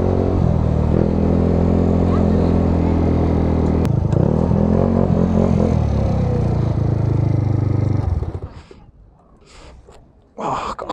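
Motorcycle engine running steadily at low speed, shut off about eight seconds in.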